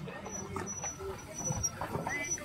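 Faint voices of people talking in the background, with scattered small knocks of handling noise.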